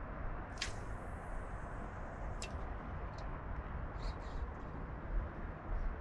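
Quiet outdoor ambience: a steady low rumble with a few faint, short, high clicks scattered through it.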